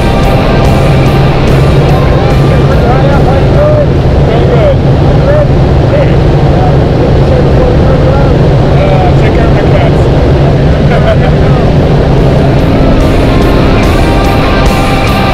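Loud, steady drone of a single-engine propeller plane's engine and airflow, heard from inside the cabin during the climb, with people's voices raised over it.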